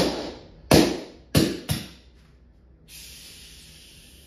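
Salt Supply S2 CO2-powered less-lethal marker firing four sharp shots within about two seconds, its 12-gram CO2 running low. From about three seconds in comes a steady hiss: a large puff of CO2 venting out of the marker through the decocking hole.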